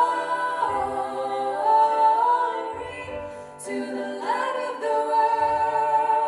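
A female vocal quartet singing a cappella in close harmony, holding sustained chords that change every second or so. The voices briefly drop away about three and a half seconds in, then re-enter together on a new chord.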